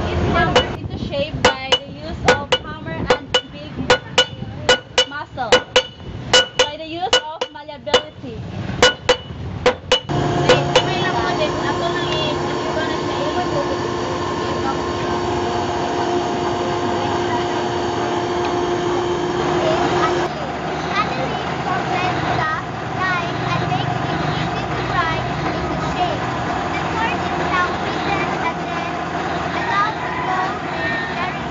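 Blacksmith's hammer striking steel over and over, about three ringing blows a second, stopping about ten seconds in. A steady hum with a rushing noise follows for about ten seconds, then voices.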